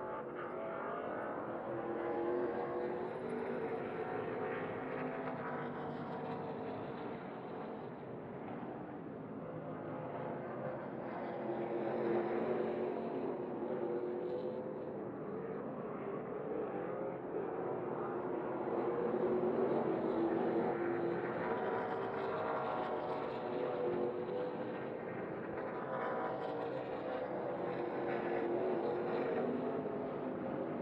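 NASCAR Craftsman Truck Series race trucks' V8 engines running on a road course, their notes rising and falling repeatedly as the trucks accelerate, shift and brake through the corners.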